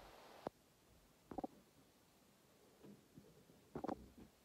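Near silence with a few faint short clicks and a brief rustle near the start.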